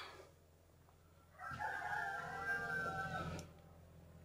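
A rooster crowing once, a single call of about two seconds starting about a second and a half in.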